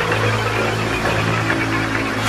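Soundtrack music with a steady low drone.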